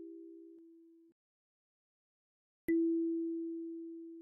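Kalimba notes ringing out and fading away about a second in, then after a short silence a single low E (E4) tine plucked near the three-second mark, ringing as a pure tone and slowly decaying.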